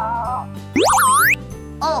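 Cartoon 'boing' sound effect: a short, loud, rising and wobbling glide lasting about half a second, just after the middle, over cheerful children's background music.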